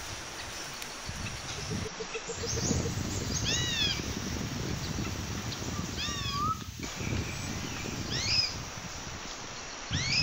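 A few short animal calls, each rising then falling in pitch, heard about three and a half, six and eight seconds in, over a low rustling noise.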